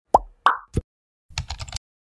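Animated intro sound effects: three quick pops in a row, the first dropping in pitch, then a brief rattling cluster of clicks.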